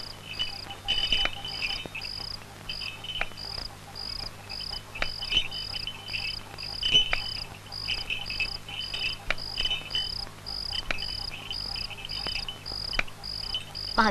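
Crickets chirping in night ambience, one steady chirp repeating about twice a second over other, irregular insect trills, with a few short, soft knocks scattered through.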